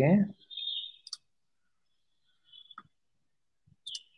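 A few sharp, scattered computer mouse clicks, about a second in, near three seconds and near the end, with a thin high tone beside some of them; the tail of a spoken word at the start.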